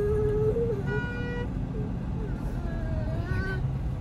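Steady road and engine noise of a moving vehicle, with a short horn toot about a second in that lasts about half a second.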